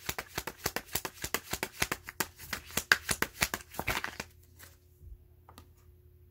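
A tarot deck being shuffled by hand, with a rapid run of card flicks and slaps that stops about four seconds in. After that only a faint steady hum remains.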